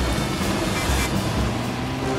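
Video-slot sound effect of an old motor truck's engine running over a steady hiss of rain. The engine's low rumble drops away about a second and a half in.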